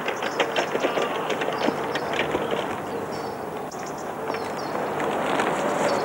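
Crisp packet crinkling in a person's hands: many quick crackles over a steady outdoor background hiss.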